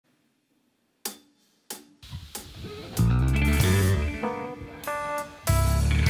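Two drumstick clicks counting in, evenly spaced about two-thirds of a second apart, after a brief near silence. A rock band then comes in: guitar and bass from about two seconds, and the full band loud from about three seconds in.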